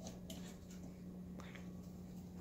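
Faint steady hum from a louvered fluorescent fixture's ballast, with a few light clicks as its two tubes start and come on. The speaker judges this fixture's ballast not to be a rapid-start type.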